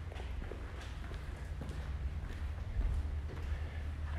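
Faint footsteps over a low, steady rumble.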